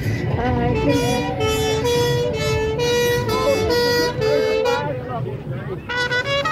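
Fire engine's siren sounding a quick two-note high-low call, the notes alternating about three times a second, from about a second in until it stops near the end.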